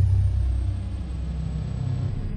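A deep, steady rumble from the sound design of an animated logo intro, starting just after a brief dead-silent gap, with a thin, faint high tone held above it.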